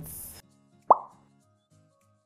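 A single short plop sound effect, a quick upward-gliding 'bloop', about a second in, then soft background music with sustained notes.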